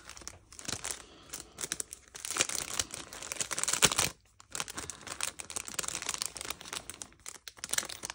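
Clear plastic cellophane bags crinkling as they are handled and opened, in uneven bursts with a brief pause about four seconds in.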